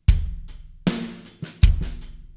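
Drum kit played in a slow beat. Deep kick-drum hits come about a second and a half apart, each with a cymbal ringing over it, and a sharper snare hit falls between them.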